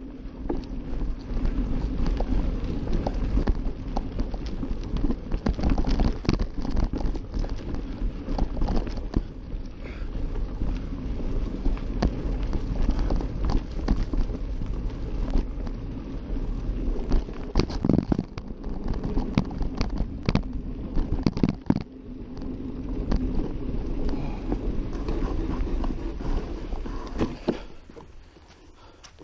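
A mountain bike ridden over a dirt trail strewn with dry leaves and heard up close from the bike: a steady rumble of tyres and rushing air, broken by frequent rattling knocks over bumps. It falls away at the very end as the bike comes to a stop.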